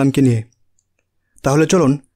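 Only speech: a voice reading a Bengali text aloud, breaking off about half a second in for a second of silence before going on.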